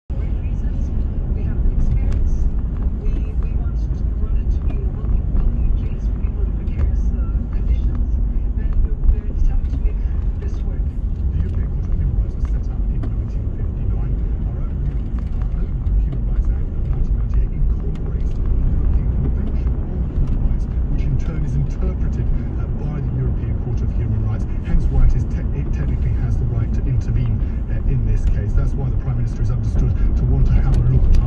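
Steady low rumble of a car's engine and tyres heard from inside the cabin while it drives along a street.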